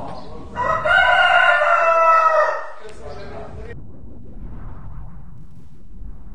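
A rooster crowing: one long, loud call of about two seconds, starting about half a second in and trailing off by about four seconds.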